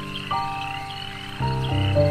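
Frogs croaking, with short high chirping calls repeating, laid over ambient meditation music of long held notes. A louder, deeper set of notes comes in about one and a half seconds in.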